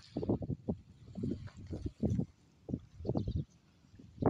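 Gusty wind buffeting the microphone in short, irregular bursts.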